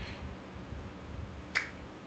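Faint background noise with one short, sharp click about one and a half seconds in.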